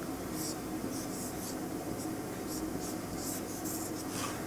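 Marker pen drawing on a whiteboard: a string of short, faint scratching strokes as boxes are drawn.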